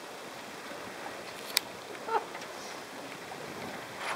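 Steady outdoor background hiss with no clear source, broken by one sharp click about a second and a half in and a brief faint voice shortly after.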